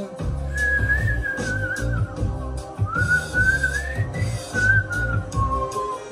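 Whistling of a wavering, gliding melody over recorded music with a steady bass line.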